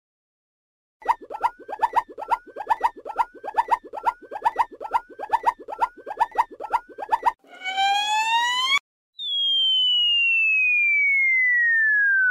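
Cartoon sound effects for a comic handshake: about a dozen short pops, each with a little upward chirp, roughly two a second. Then a brief rising whistle, and from about nine seconds in a long whistle that falls steadily in pitch, like a bomb dropping.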